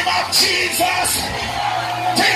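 Live gospel praise music played loudly, with the congregation shouting and yelling over it.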